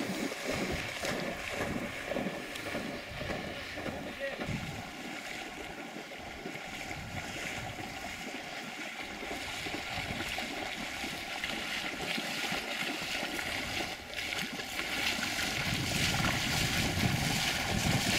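A black Labrador retriever splashing as it swims and wades through shallow marsh water, retrieving a shot duck, with wind on the microphone. The splashing grows louder over the last few seconds as the dog comes close.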